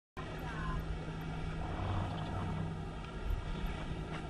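Steady outdoor background noise with a low rumble and faint voices, cutting in abruptly a moment in.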